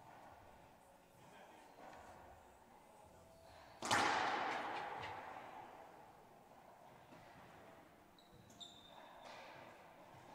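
A racquetball struck hard in an enclosed court: one sharp crack about four seconds in that rings on and fades over about two seconds, with fainter knocks around it. Near the end come a few faint high squeaks of sneakers on the hardwood floor.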